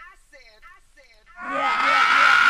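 A chopped vocal sample of a man's voice saying "I said", repeated about four times a second in a stutter, each repeat sliding down in pitch and fading. About one and a half seconds in, a synth swell of hiss with a high steady tone rises in.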